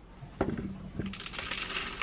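Whole coffee beans tipped from a scoop into the metal hopper of a wooden hand-crank coffee grinder. A couple of clicks are followed by about a second of dense clattering as the beans pour in.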